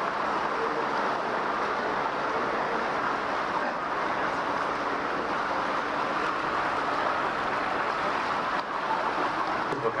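Steady rushing noise of an open canal tour boat under way: its engine and the water along the hull, with no breaks or sudden sounds.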